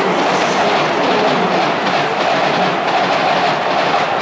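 Crowd noise filling a large domed baseball stadium: a steady, loud roar of many sounds with no clear melody, echoing under the roof.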